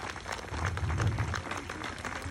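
Scattered hand-clapping from a small outdoor crowd, several uneven claps a second, over a low rumble of wind on the microphone.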